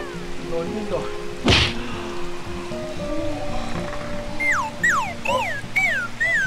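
Edited background music of steady held notes, with one sharp thump about a second and a half in, then a run of quick falling-pitch sound effects near the end, about two a second.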